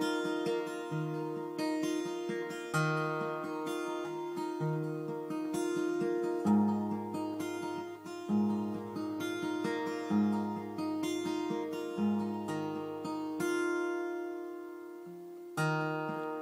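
Acoustic guitar with a capo, fingerpicked through a slow repeating chord pattern, an open string ringing on under the changing chords. A new bass note sounds about every two seconds, and the bass drops lower about six and a half seconds in.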